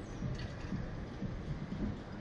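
Uneven low rumble of wind buffeting the microphone of the camera mounted on a Slingshot ride capsule as the capsule bobs on its cords.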